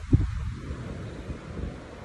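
Wind buffeting a phone's microphone outdoors: a low, uneven rumble, with a brief louder thump just after the start.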